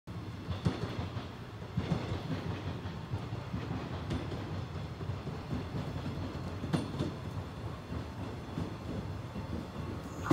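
JR 415 series 100-subseries electric multiple unit drawing into a station: a steady low wheel-and-rail rumble broken by a few sharp clacks as its wheels pass over rail joints.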